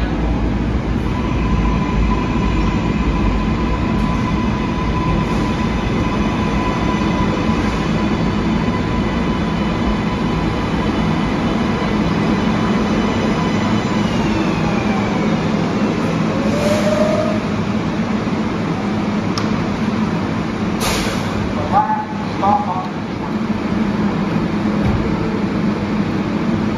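Kawasaki R188 subway train braking to a stop, its propulsion giving a steady rumble with several whining tones that glide down in pitch about midway. Near the end comes a short burst of hiss, then a brief chime as the doors open.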